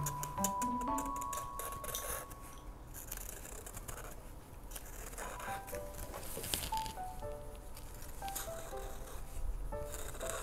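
Light background music, a tune of short plinking notes, with scattered scratches and taps of a marker drawing on a paper plate.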